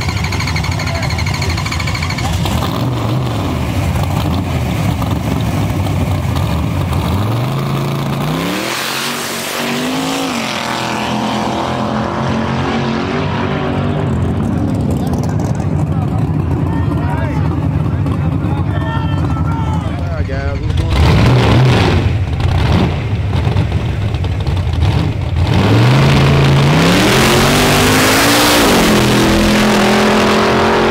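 Race car engines running at a street drag race. The engine note rises in pitch as a car accelerates, about a quarter of the way in and again near the end, with loud bursts of revving in between.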